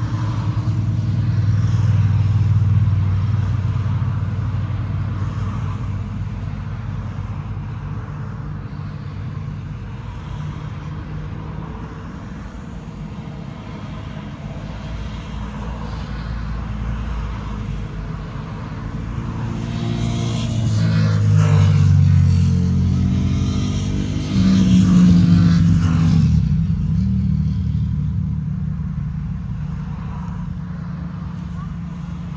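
Road traffic passing close by: vehicles driving past, swelling about two seconds in and again in the second half, when one vehicle's engine note falls in pitch as it goes by.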